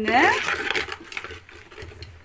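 A steel ladle and spoon faintly scraping and clicking against an aluminium pot while rice flour is stirred into jaggery syrup for adhirasam dough. It follows a single spoken word at the start.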